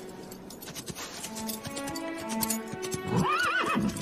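Horse hooves clopping, then a horse whinnying near the end in several quick rising-and-falling cries, over background film music.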